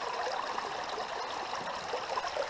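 Steady rush of shallow river water flowing through a gold-prospecting sluice box.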